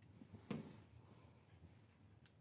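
Near silence with one light knock about half a second in, from glue bottles and model parts being handled on a workbench.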